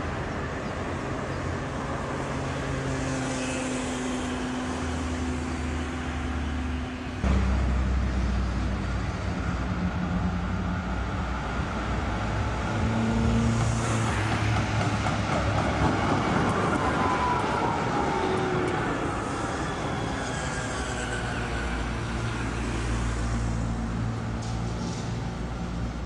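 Articulated tram running on street track, its wheels rumbling on the rails with a low motor hum. The sound jumps suddenly in level about seven seconds in, and later a whine falls in pitch as the tram moves away.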